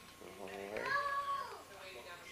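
A cat meowing once, in one long call that rises and then falls in pitch.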